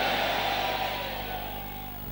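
Soft sustained musical tones slowly fading away over a steady low electrical hum.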